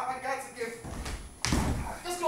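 A person falling onto a hard stage floor: a lighter bump a little under a second in, then a heavier thud about one and a half seconds in.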